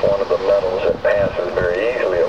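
A person talking, the voice sounding thin and radio-like.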